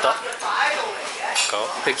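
Dishes and cutlery clinking a few times in a restaurant, with other diners' voices underneath.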